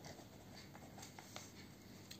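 Faint sound of a pen writing on a paper notebook page, with a few light ticks from the pen strokes.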